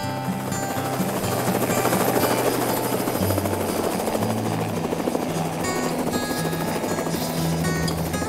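Helicopter coming in to land, its rotor and engine noise growing louder as it descends and hovers low over the ground, with background music underneath.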